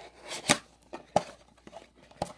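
Paperboard box flap being pried open by hand: a sharp snap about half a second in as the flap pulls free, a smaller click about a second in, and light cardboard rustling between.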